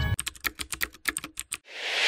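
Keyboard typing sound effect: a quick run of about a dozen key clicks, followed near the end by a rising whoosh that cuts off suddenly.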